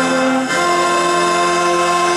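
Accordion, acoustic guitar and two saxophones playing a traditional caramelles tune together. The chord changes about half a second in and is then held steady.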